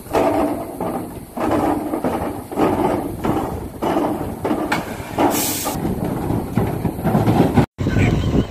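Metal livestock trailer rattling and clanking in repeated bursts about a second long as its rear gate is worked by rope, with a short hiss about five seconds in.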